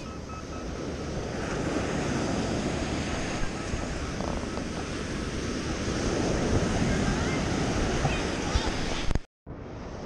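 Surf breaking and washing up on a sandy beach, a steady rushing wash with wind buffeting the microphone. The sound cuts out abruptly for a moment near the end.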